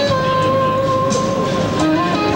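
Electric guitar lead holding one long, sustained note with a slight waver, then moving to lower notes near the end.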